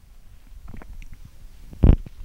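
Handling noise on a handheld microphone held close to the mouth: faint small clicks, then a short low thump near the end as the microphone is moved up to the mouth.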